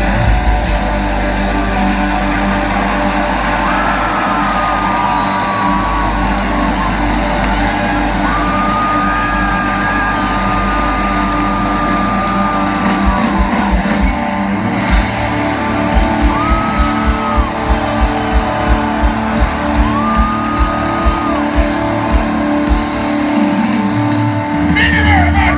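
Rock band playing live, heard from the crowd: electric guitars with long held high notes. About halfway through, a steady kick-drum beat of about two a second comes in.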